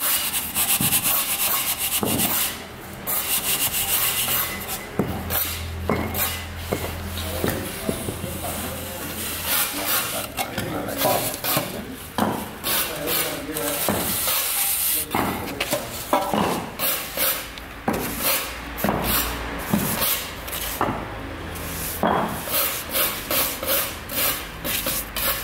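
Mason's steel trowel and straightedge bar working fresh cement plaster on a concrete block: repeated rough rubbing and scraping strokes with sharp taps in between.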